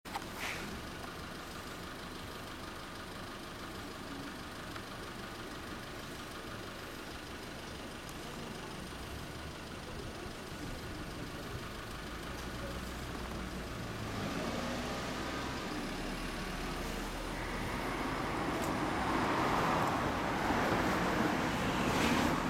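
Steady outdoor road-traffic background noise, growing louder over the last few seconds.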